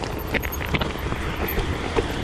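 Mountain bike rolling down a rocky stone path, its tyres crunching over loose stones, with several sharp knocks and rattles from the bike as it hits rocks, over a steady low rumble.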